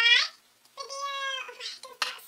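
A woman's voice pitched very high: a short rising sound, then one long held vowel about a second in.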